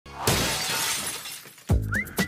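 Title-sting sound effect: a crash like breaking glass hits about a quarter second in and fades away over more than a second, followed near the end by a deep musical hit.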